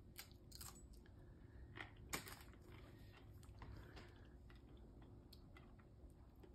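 Faint crunches of a person biting off and chewing a small corner of a Paqui One Chip, a thin, stiff tortilla chip. The crunches are a few scattered sharp clicks, the loudest about two seconds in.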